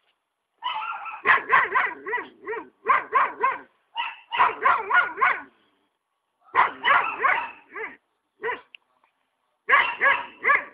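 An animal calling in quick runs of short, harsh calls, about four a second, four to six calls in each run, with short pauses between runs. There is a single call near the end, and a new run starts just before the end.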